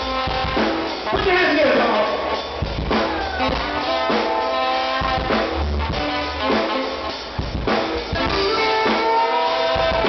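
Live funk band playing, with trumpet and saxophone playing horn lines over a drum kit beat.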